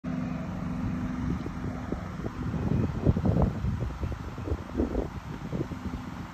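A steady low engine hum, clearest in the first couple of seconds, with gusts of wind buffeting the microphone through the middle.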